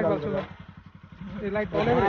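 Motorcycle engine idling with a low, rapid pulsing, heard on its own in a short gap between voices; a voice talks at the start and again near the end.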